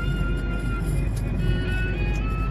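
Music with a long held high note, over the steady low road rumble of a car driving on a highway, heard from inside the cabin.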